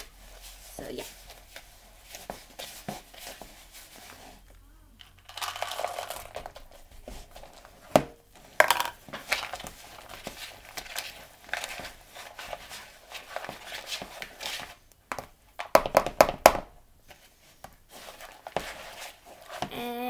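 Metal whisk stirring thick cake batter in a plastic mixing bowl: uneven scraping and rustling with sharper clicks and knocks against the bowl, in stronger bursts about eight seconds in and again around sixteen seconds.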